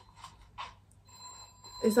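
Quiet pause with faint, thin, steady high-pitched tones and a soft swish about half a second in.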